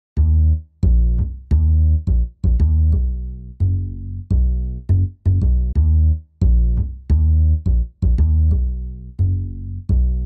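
Song intro: a plucked bass line playing on its own, about two notes a second, each note starting sharply and dying away.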